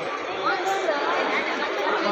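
Crowd chatter: many voices talking at once, steady throughout.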